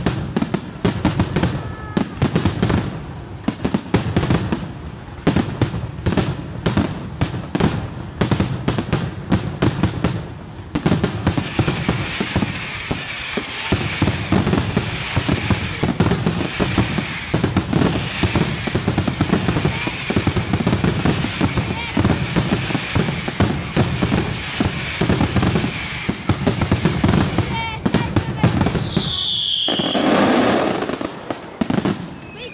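Aerial fireworks display: rapid volleys of shell bursts and bangs, turning about ten seconds in into a dense, continuous crackling of crackling stars. A short whistle rises and falls near the end, followed by a loud burst.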